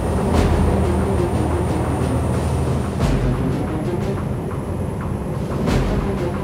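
Engines of a waterjet lifeboat running hard through a high-speed turn, a steady drone with the rush of the wake and a few thuds, about three seconds apart, from the hull meeting water. Music plays over it.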